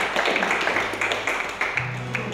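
Small audience clapping after a song, the applause gradually dying down, with a low held note coming in about halfway through and getting louder near the end.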